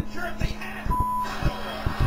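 Soft knocks and rustling from a fleece blanket being handled close to a laptop's built-in microphone, over a steady low electrical hum. About a second in, a short electronic beep sounds.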